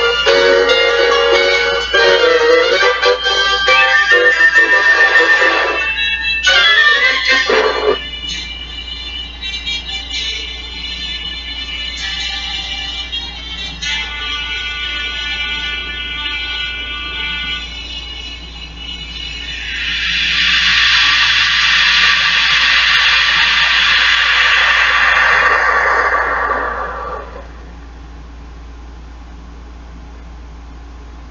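Music from a VHS tape played through a small TV's speaker, loud at first and quieter after about eight seconds. About two-thirds of the way in, a loud hissing noise sweeps downward in pitch for several seconds and dies away, leaving a steady low hum.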